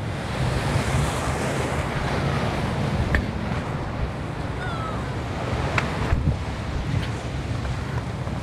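Sea surf washing and breaking against a rocky shoreline, a steady rush of noise mixed with wind buffeting the microphone. A few short clicks come through about halfway and again near the end.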